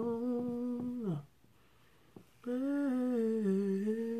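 A woman humming a slow gospel tune: one long held note that slides down and stops about a second in, then, after a short pause, another long note that wavers and dips.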